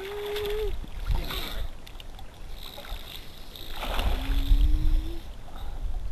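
Water sloshing and splashing in a natural hot spring pool as bathers move in it, with wind buffeting the microphone, loudest about four to five seconds in. A short low hum sounds near the start and another about four seconds in.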